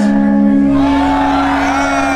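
Live metal concert heard from within the audience: the band holds a steady chord while the crowd sings and whoops along. A low hum comes in about half a second in.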